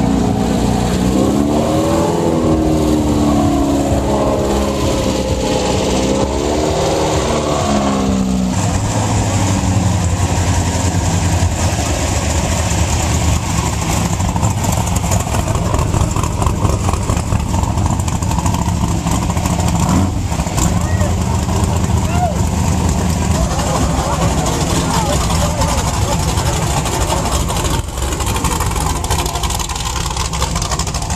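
Off-road race vehicle engine revving up and down a few times, then running steadily at idle, amid crowd chatter.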